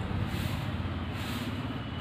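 A steady low mechanical hum over an even background noise, with no distinct events.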